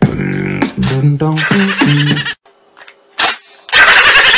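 A short novelty tune of quick stepped notes, which stops after a couple of seconds. A near-silent pause follows with a single short burst, and loud sound comes back near the end.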